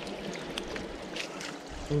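Water trickling and draining through the mesh of a large hand-held sieve net, with a few small splashes.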